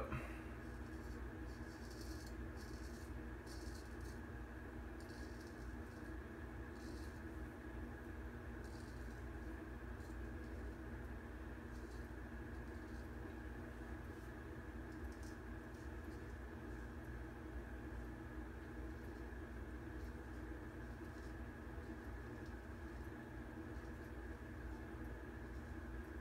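Straight razor scraping lathered stubble in short, faint strokes, heard as brief high scratchy rasps, more of them in the first half, over a steady low room hum.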